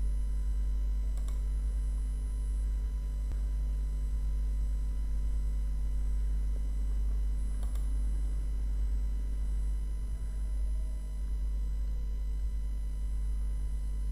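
Steady low electrical hum with a faint buzz of evenly spaced overtones, unchanging throughout. Two faint clicks, about a second in and again near the middle.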